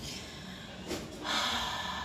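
A woman's audible breath in, a hissing inhale that starts just over a second in and lasts about half a second.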